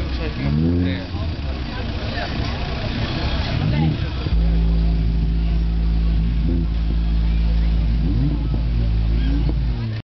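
Car audio subwoofers playing during an SPL test: gliding bass notes first, then, about four seconds in, a sudden, very loud, steady low bass tone that holds for around six seconds.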